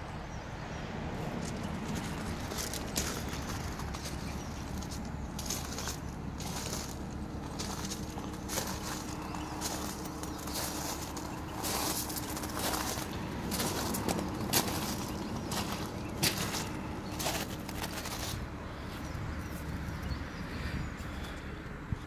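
Footsteps crunching irregularly on a gravel drive, most of them in the middle of the stretch, over a steady low rumble.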